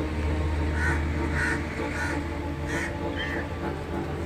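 Crows cawing: about five short calls, roughly one every half second, over a steady low hum.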